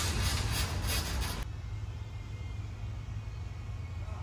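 Newspaper masking paper crinkling and rustling as it is pressed and taped onto a motorhome's front cap, over a steady low hum. The rustling cuts off suddenly about a second and a half in, leaving only the hum.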